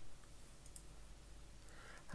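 A couple of faint computer mouse clicks, close together, over quiet room tone with a low hum.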